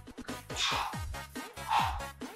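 Electronic dance music with a steady kick-drum beat and bass line.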